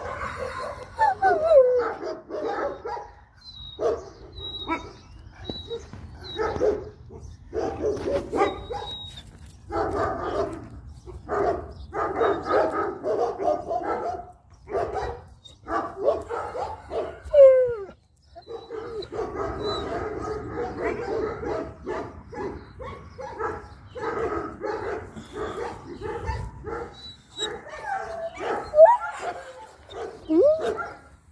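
Several dogs whining and barking in short, repeated bouts, with a few sliding yelps.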